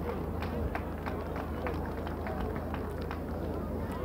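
Faint open-air ambience from a standing crowd: a steady low rumble on the microphone, faint distant voices and a scattered run of light ticks.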